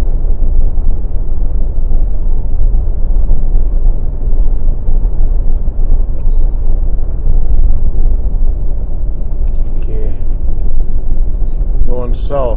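Steady low rumble of a car driving at highway speed, engine and tyre noise heard from inside the cabin.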